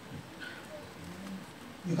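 Quiet room tone with a few faint, short voice-like sounds, then a man's voice through a microphone starts speaking right at the end.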